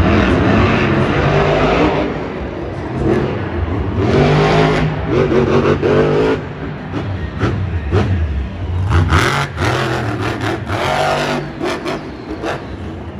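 Grave Digger monster truck's supercharged V8 revving hard in repeated surges, the engine note climbing and falling as the throttle is worked, with the strongest bursts about four seconds in and again near the end.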